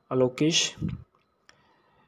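Spoken narration for about the first second, then a near-silent pause with a single faint click.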